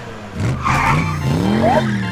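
Cartoon car sound effect of a vehicle speeding off: a tyre screech about half a second in, with engine revs sweeping up and down in pitch.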